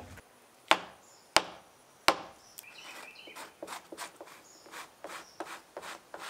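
Three sharp knocks about 0.7 s apart, then a fiberglass console being sanded by hand with a sanding sponge: short rhythmic scraping strokes, about three a second, starting a little before halfway through.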